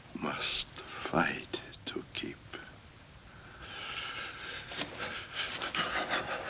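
An exhausted old man breathing hard and gasping, with breathy, half-whispered words between the breaths.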